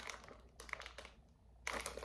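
Clear plastic zip-top bag of wax melts crinkling as it is handled, in short scattered crackles that stop for a moment past the middle and start again near the end.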